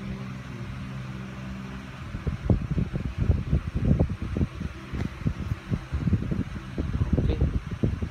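Steady low hum of a fan. From about two seconds in, irregular low thumps and rustling come from hands handling the coin and phone close to the microphone.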